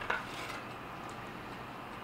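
A single short metallic click from handling a bare katana blade, followed by faint room tone.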